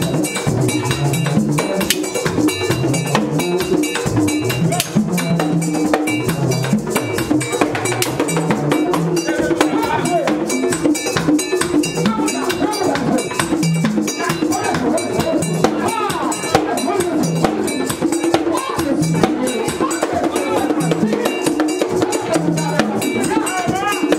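Vodou ceremonial drumming: a metal bell struck in a fast, steady rhythm over hand drums, with voices singing over it.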